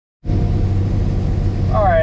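New Holland TR88 combine running, a steady low drone heard from inside the cab; it starts abruptly a fraction of a second in. A man's voice begins near the end.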